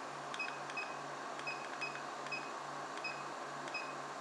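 iCharger 3010B balance charger's buttons being pressed, each press giving a short high beep, about seven at irregular spacing. Under them the cooling fans of the power supply and chargers whir steadily while the chargers run at 30 amps.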